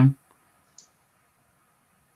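A voice trails off at the very start, then near silence with a single faint, short click a little under a second in.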